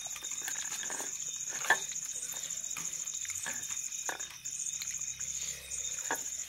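Eating by hand from a steel plate: fingers mixing rice and dal, with soft mouth and chewing sounds and small clicks against the plate, the loudest a sharp click a little under two seconds in. A steady high cricket trill runs behind, breaking off briefly twice near the end.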